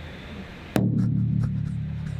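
Steady low electrical hum from amplified instrument gear, with one sharp click about three quarters of a second in, after which the hum comes back louder.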